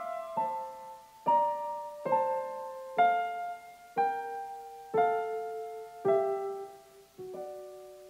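Solo piano playing a slow instrumental: a chord struck about once a second, each left to ring and fade. The last chord, near the end, is held and dies away.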